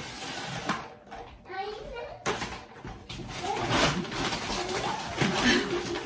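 A large, fully packed shopping bag being heaved up, its contents rustling and knocking, with one sharp knock about two seconds in. A voice comes in over the second half.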